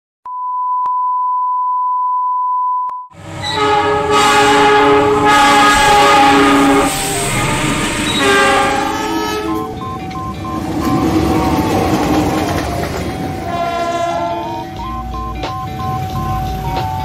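A steady beep tone for about three seconds. Then a locomotive's multi-note air horn sounds in several long chord blasts, and from about ten seconds in, music with a stepping melody plays over train noise.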